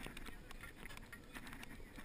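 A few faint, scattered knocks and clicks of hands and gear against a small sailing dinghy's hull and fittings, over a quiet background.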